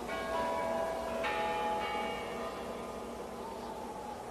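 Bell-like chimes from a film soundtrack: two struck tones, the first right at the start and the second about a second later, ringing and slowly fading over a steady hiss.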